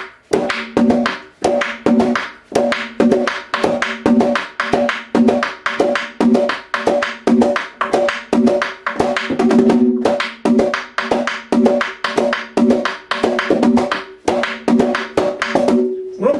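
Dominican tambora played in a merengue rhythm. The right hand plays stick strokes and the bare left hand plays slaps (galleta or quemado) on the second and fourth beats, in a steady, fast, repeating pattern with a ringing drum tone.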